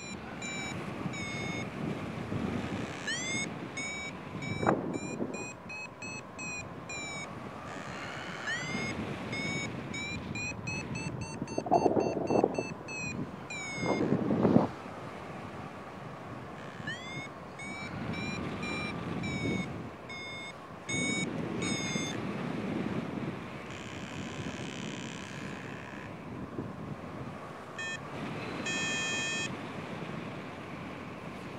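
Paragliding variometer beeping in runs of rapid beeps at a steady high pitch, each run opening with a rising chirp, the tone a vario gives while the glider is climbing in lift. Wind rushes on the microphone throughout, with two louder gusts near the middle.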